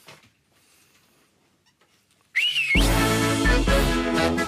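Near silence, then a short whistle that rises and falls, and a marcha popular (Lisbon festive march) starting loudly on a keyboard synthesizer with full bass accompaniment just under three seconds in.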